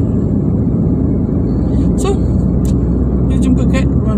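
Steady low road and engine rumble inside a moving car's cabin. Brief faint voice sounds come in from about halfway through.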